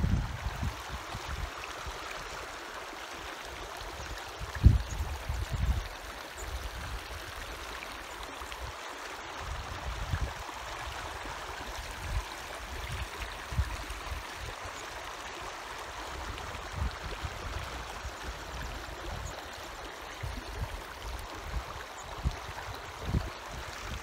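Small rocky mountain stream gurgling steadily over stones, with occasional low thumps, the loudest about five seconds in.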